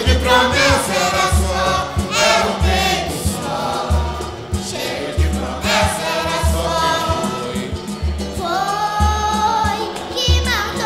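Live samba: several voices singing together over cavaquinho and a steady, deep drum beat.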